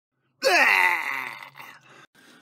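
A man's drawn-out vocal groan, starting loud with a quick drop in pitch and trailing off over about a second.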